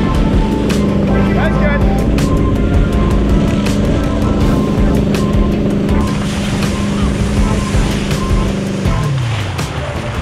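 Tow boat's engine running at a steady pitch over rushing water and spray. About nine seconds in, the engine note drops as the boat throttles back.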